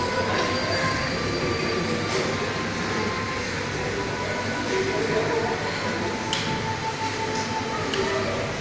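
Recorded train sound played through loudspeakers as a stage mime's soundtrack: a steady rumbling roar, with a thin high squeal held for a couple of seconds in the second half.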